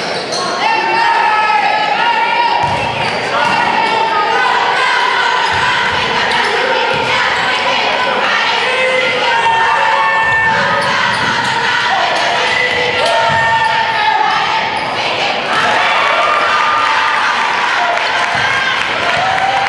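Live basketball game sounds in a gym: a ball bouncing on the hardwood court, sneakers squeaking in short high chirps, and players and spectators calling out, all echoing in the large hall.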